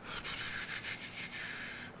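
A rough hissing noise close to the microphone, lasting almost two seconds and cutting off sharply just before speech resumes.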